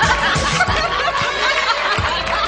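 Dance music with a steady beat, about two beats a second, with the judges laughing over it.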